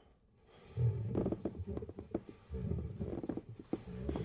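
A low, guttural growling rumble laced with crackling clicks, like a monster's croak. It starts about a second in and comes in two stretches with a short break between.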